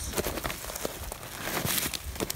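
Footsteps crunching and crackling on dry pine needles and twigs on the forest floor, an irregular run of small snaps and rustles.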